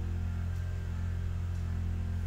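Steady low hum with no change and no sudden sounds.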